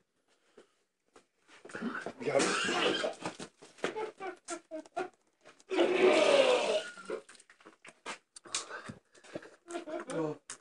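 Rough, wordless vocal noises from a man straining, in two loud bursts about two seconds and six seconds in, with scattered small clicks and gulps between.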